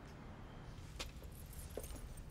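A few faint, sharp clicks and light jingles over a low steady rumble, the clearest about a second in and another near the end.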